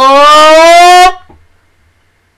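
A woman's long, very loud shocked cry of "Oh!", held on one note that rises slightly in pitch and ends about a second in.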